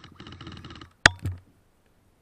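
Rustling handling noise against the camera for about a second, then a sharp click followed by a softer thud as the camera is set down, after which the sound drops away.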